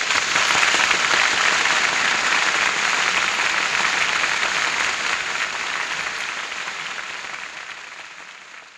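Audience applauding in a 1939 recording, a dense steady clapping that tapers off near the end.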